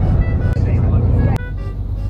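Steady low rumble of a moving coach heard from inside the passenger cabin: engine and road noise. The rumble changes abruptly about a second and a half in.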